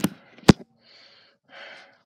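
A sharp click or knock about half a second in, followed by a few soft, faint breath-like rustles: handling noise while the phone camera is being moved.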